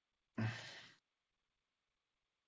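A person sighs once: a short, breathy exhale lasting about half a second, starting abruptly and trailing off.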